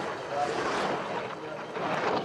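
Skeleton sled's steel runners rushing over the ice as it slides through a curve of the track, a steady noisy whoosh.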